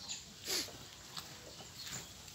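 A single short animal call about half a second in, with a falling pitch.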